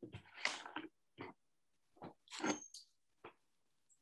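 Several short rustles and light knocks of dye samples and materials being handled on a worktable, ending with a brief tap a little after three seconds.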